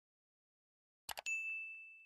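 A short double mouse-click sound effect about a second in, followed at once by a single bright bell ding that rings on and fades away: the notification-bell chime of a subscribe-button animation, sounding as the bell is switched on.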